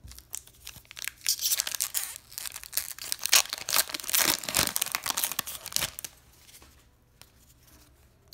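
Foil wrapper of an SP Authentic hockey card pack being torn open and crinkled by hand: dense crackling that starts about a second in and lasts about five seconds.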